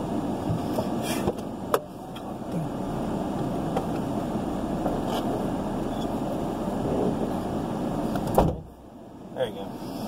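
Steady road and engine noise heard inside a car's cabin while driving, with a few sharp clicks early on and a louder knock near the end, after which the noise briefly drops away.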